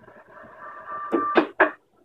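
Radio audio from a VHF mobile transceiver receiving a Yaesu DR-1X repeater's crossband retransmission of a 430 MHz handheld signal on 144.600 MHz: a steady whistle over hiss, then a few short loud bursts about a second and a half in, cutting off sharply shortly before the end.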